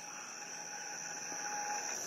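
Steady, high-pitched drone of an outdoor insect chorus, with a faint low tone under it in the middle.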